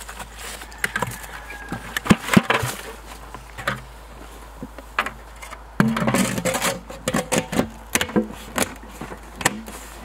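Plastic sap buckets and a bucket lid knocking and clattering as they are handled, with ice from the frozen maple sap being dumped out of the smaller bucket. The clatter grows busier about six seconds in, as the large collection bucket is handled.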